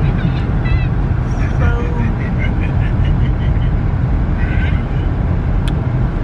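Steady low rumble of road and engine noise inside a moving car's cabin, with faint voices in the background and a brief click near the end.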